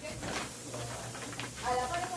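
Indistinct voices over a steady low hum, with a few short clicks or rustles in the first half.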